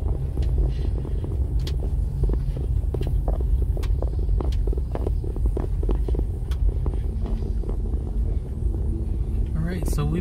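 Car driving slowly, heard from inside the cabin: a steady low road rumble with scattered light clicks and ticks.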